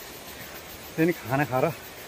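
A man's voice speaks a short phrase about a second in, over a steady background hiss outdoors.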